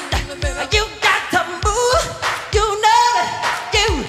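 Live pop-gospel performance: a male lead singer sings with bending, sliding pitch over a steady beat of about three thumps a second.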